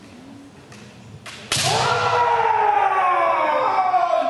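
A sharp crack about a second in, then a kendo fencer's long kiai shout that starts loud about a second and a half in and slowly falls in pitch as it is held.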